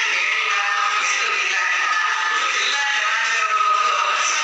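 A woman singing into a microphone, her voice carried over a loudspeaker system, with long held notes near the end.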